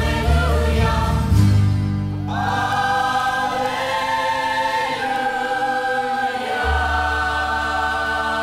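Closing music of a hip-hop track: a choir singing long held notes over sustained low bass notes, with no drum beat.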